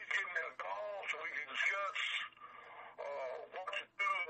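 A voice speaking over a telephone line, faint and thin, cut off above the normal phone band.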